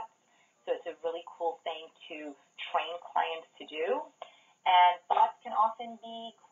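A person talking steadily over a telephone line, the voice thin and narrow-band.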